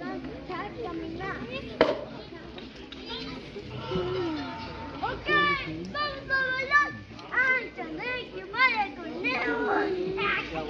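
Children's high voices calling and shouting over the general chatter of a crowd, the children louder from about five seconds in. A single sharp knock about two seconds in.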